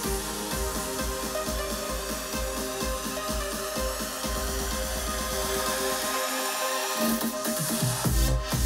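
Electronic dance music played through a Harman/Kardon Go + Play 3 portable speaker in a volume sound test, with a steady pulsing bass beat. The bass drops out for about a second near the end, then comes back.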